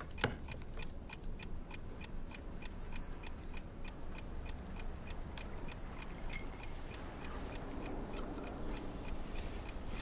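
A clock ticking rapidly and evenly, several ticks a second, over a faint low hum of room tone.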